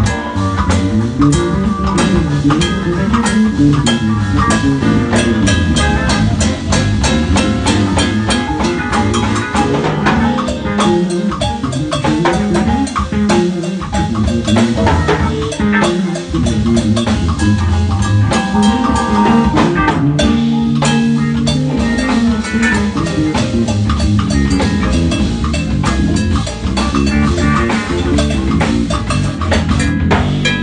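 Live band playing a busy, up-tempo groove: drum kit and percussion struck in rapid, dense strokes over a moving electric bass line.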